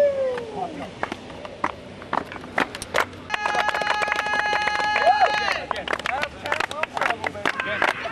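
Voices of a group of players gathered close together, with sharp claps and slaps throughout that grow denser near the end as hands are clapped. A steady held tone with several pitches at once sounds for about two seconds in the middle.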